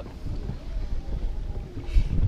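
Wind rumbling on the microphone, with water lapping against the hull of a small fishing boat on choppy water.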